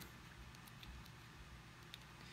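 Near silence: room tone, with a faint tick near the end.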